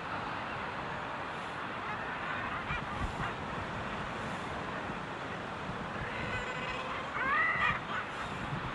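Common guillemot breeding colony: a steady hiss of background noise with scattered faint bird calls, and one louder call near the end that rises and falls in pitch, lasting under a second.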